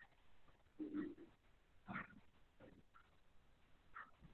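Near silence on an online call, broken by a few faint, short sounds about one and two seconds in.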